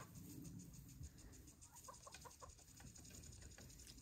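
Faint clucking from Leghorn chickens: a few short, soft clucks about halfway through, over near silence.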